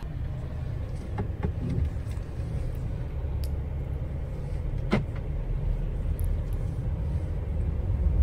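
Steady low road rumble inside a moving car's cabin, with a few faint clicks and one sharper tick about five seconds in.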